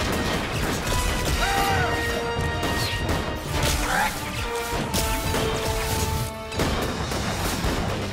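Action-film fight sound mix: repeated crashes and hits over a dramatic musical score, with brief shouts. A sharp crash comes after a short lull near the end.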